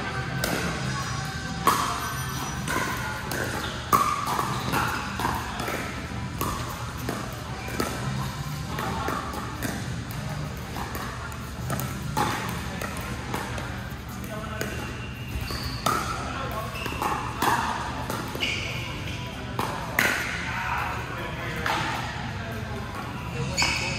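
Pickleball paddles striking a hard plastic pickleball in a doubles rally: sharp pops at irregular intervals of one to a few seconds, ringing in a large hall, over background voices.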